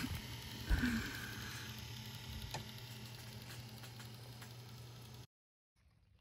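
Small DC motors of a homemade submarine's ballast pumps running with a steady low hum and hiss while drawing water in through a hose. A short louder bump comes just under a second in, and the sound cuts off abruptly a little after five seconds.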